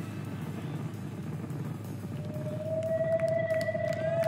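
A live rock band in a spacey, droning passage: a low rumbling drone, with a steady synthesizer tone that swells in about halfway through and grows louder.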